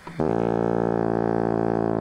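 Bassoon playing one long, low note, held steady and rich in overtones, that starts just after the opening and cuts off suddenly at the end.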